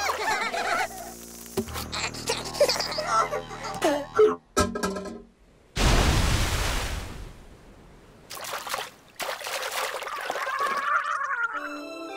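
Cartoon soundtrack of music and quick sound effects. About six seconds in comes a sudden loud rush of water as a water spout shoots up out of the sea, fading away over a second or so.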